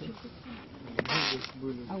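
Voices talking in the background, with a click and then a short rasping rustle lasting about half a second, about a second in.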